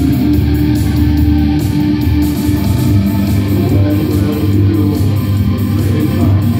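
Goth rock band playing live, a guitar-led passage with electric guitar and bass at a steady, full level.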